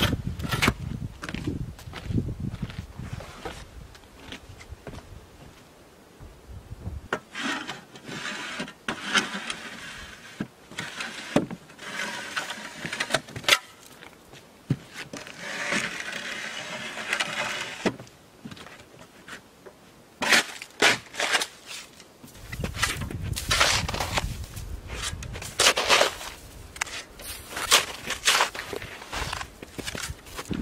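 Metal shovel blade scraping crusty ice off a wooden plank deck: long rasping scrapes mixed with many sharp knocks and chops of the blade on ice and boards.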